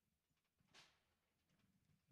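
Near silence: room tone, with one faint, brief hiss about three-quarters of a second in.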